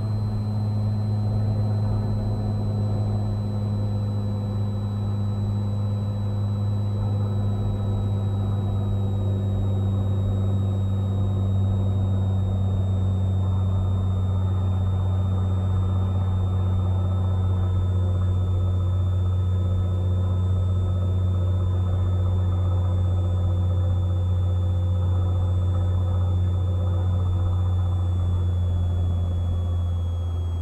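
Cessna 182's piston engine and propeller droning steadily, heard from the cockpit on short final for landing. The pitch sinks slowly throughout and drops further right at the end as the power comes back.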